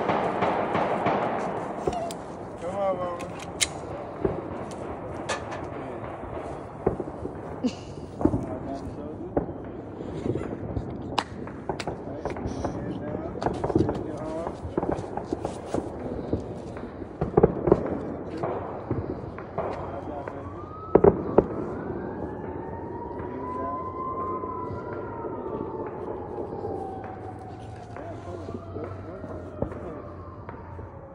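Scattered sharp bangs of New Year's celebration going off around the neighbourhood, a few of them louder than the rest, the loudest a little past the middle. In the last third a siren wails in the distance, rising and falling.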